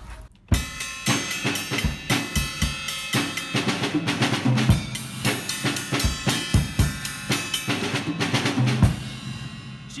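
Drum kit played with Promark Firegrain sticks: a busy groove of bass drum, snare and tom hits under cymbal wash from perforated low-volume cymbals. It starts about half a second in and stops with a final hit near the end, the cymbals ringing out.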